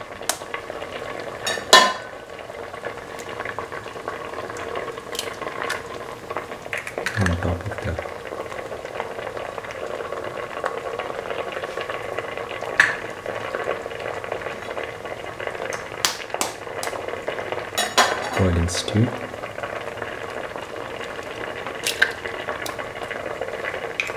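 Coconut milk stew bubbling at a steady boil in a steel pot. Several sharp clicks and taps are heard while eggs are cracked into it.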